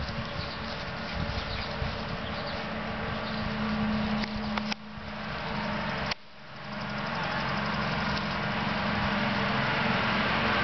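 A steady machine hum from a running motor, with a low droning tone. The sound cuts out sharply about six seconds in and swells back up.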